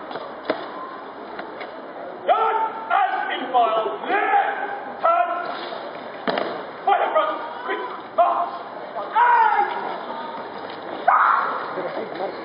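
A series of loud, drawn-out shouted military words of command, the voice bending up and down in pitch on each call, with a few sharp knocks in between.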